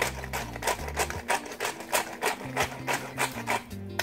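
Hand-twisted salt grinder grinding pink Himalayan salt, a rapid run of gritty clicks about five a second. Background music with a steady bass line plays underneath.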